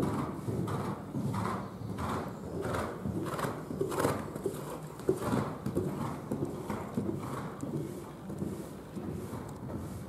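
Hoofbeats of a horse cantering on sand arena footing, in a steady repeating rhythm.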